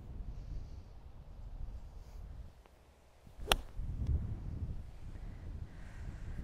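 One crisp, clean strike of a Lag Shot wedge on a golf ball about three and a half seconds in, over low wind noise on the microphone.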